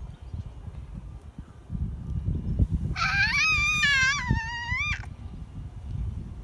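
A toddler's high-pitched squeal lasting about two seconds, starting about halfway through and wavering up and down in pitch. Low rumbling wind noise on the microphone runs underneath.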